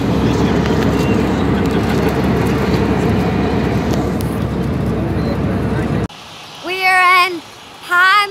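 Steady airliner cabin noise in flight, the even rush of engines and airflow, cutting off suddenly about six seconds in. A woman's long high call follows near the end.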